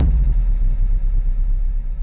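Intro sound effect: a sudden deep hit that sets off a heavy low rumble, fading slowly.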